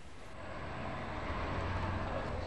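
Street ambience with a steady low rumble of road traffic, swelling slightly toward the end.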